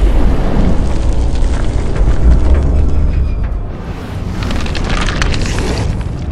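A deep, drawn-out rumbling boom from a slowed-down shotgun blast, strongest in the first three seconds and easing after, with music under it.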